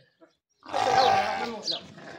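A brief dropout to silence, then a Sardi sheep bleats once, for about a second.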